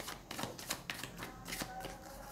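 A deck of tarot cards shuffled by hand, the cards flicking against each other in a quick, irregular run of light clicks.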